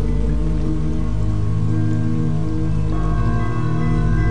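Ambient meditation music: a steady low drone with several held tones layered over it, and a soft, even hiss beneath. A new higher tone comes in about three seconds in.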